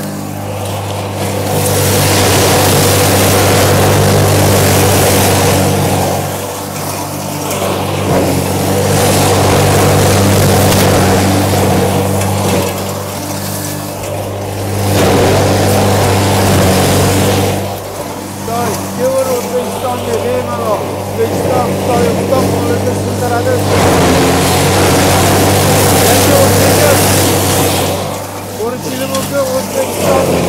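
Tornado electric fodder crusher (drabilka) grinding straw fed by hand into its hopper. A steady motor hum sits under a loud rushing grind that swells while straw is going in and eases briefly several times between armfuls.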